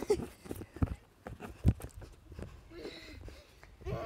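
Scattered short knocks and soft thumps, the loudest about a second and a half in, with a brief voice near the end.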